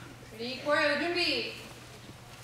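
A voice calls out a short word or command, about a second long, starting about half a second in, over a faint steady low hum.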